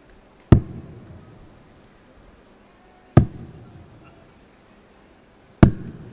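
Three steel-tip darts striking a Unicorn bristle dartboard one after another, each a single sharp thud with a short decay, about two and a half seconds apart.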